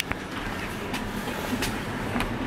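Low steady background noise with a few faint clicks, from a handheld camera being moved and a hand reaching in among books on a shelf.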